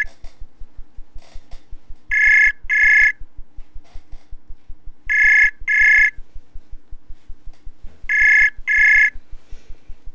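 Ringback tone of an outgoing web-browser voice call: a pair of short high rings, repeated every three seconds, three times in all. The call is ringing and has not been picked up.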